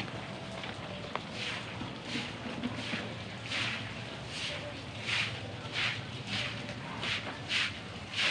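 A broom sweeping a concrete floor in regular brushing strokes, about three every two seconds, starting about a second and a half in.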